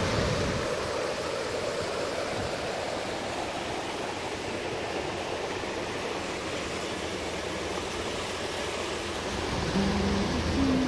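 Steady rushing noise of rain and river water pouring over a low weir, with no clear events in it.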